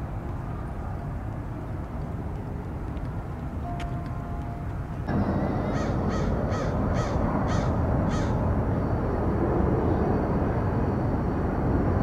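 A crow cawing about six times in quick succession, a little after the middle, over a steady low outdoor rumble that grows suddenly louder about five seconds in.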